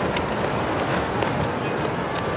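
Busy indoor ice-rink ambience: a steady wash of skates on the ice mixed with background voices, with a few small clicks.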